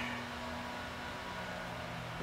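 Steady low hum over a faint even hiss, with no distinct knocks or strokes.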